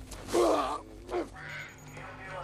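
A man's loud vocal cry, about half a second long, from a fighter just after blows land, with a shorter cry a moment later.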